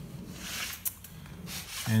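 Soft rubbing noise with a single sharp click about a second in.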